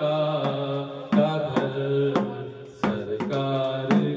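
A man's voice singing a devotional chant into a handheld microphone, holding long melodic notes. Hand clapping keeps time with him at about two claps a second.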